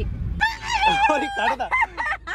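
A woman's long, high-pitched, wavering cry, starting about half a second in, over low car-cabin rumble that fades as the cry begins.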